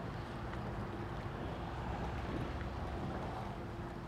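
A steady rushing noise with a faint, steady hum underneath.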